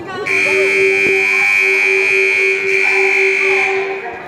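Gym scoreboard buzzer sounding one long, steady blast of nearly four seconds, a shrill high tone over a lower pulsing one, starting a moment in.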